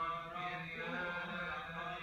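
Coptic Orthodox liturgical chanting by voices, held notes that bend slowly, heard through a TV's speaker over a steady low hum.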